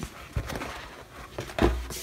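Damp microfiber cloth wiping the inside of a wooden drawer: a soft rubbing, with a few light knocks, the loudest about a second and a half in.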